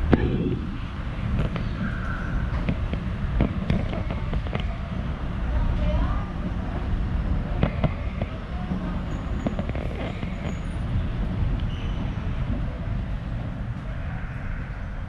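Escalator ride: a steady low rumble with scattered clicks and knocks, the loudest a sharp knock right at the start, and faint voices in the background.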